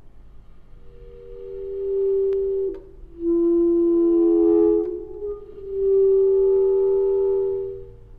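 B-flat clarinet playing slow, long held notes, three in turn. The first swells in softly about a second in, out of a quiet pause, and the piano stays silent under them.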